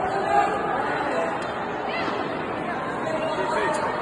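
Indistinct chatter of many overlapping voices in a large, crowded hall, with no single voice standing out.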